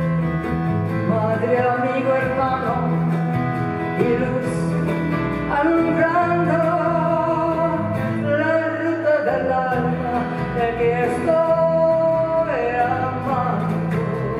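A woman singing a slow folk song in Spanish, with held notes, to her own acoustic guitar accompaniment.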